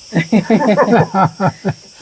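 Voices talking at close range, quick and lively, with a steady high-pitched insect drone behind them.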